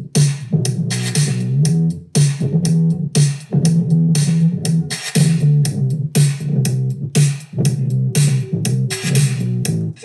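A looped drum groove and a bass-line loop playing back together at 120 BPM. The bass loop has just been quantized to sixteenth notes to tighten it against the drums. Playback cuts off at the end.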